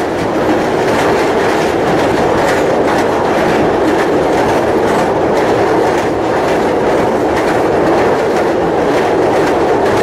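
Train running at speed across a steel truss bridge: a loud, steady rumble of wheels on the rails, with scattered clicks from the wheels over rail joints.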